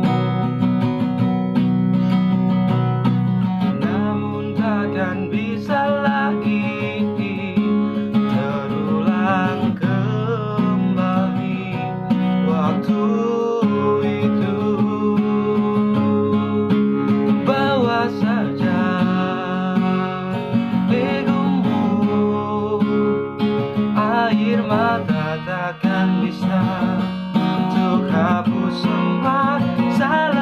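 Acoustic guitar strummed in steady chords while a man sings along.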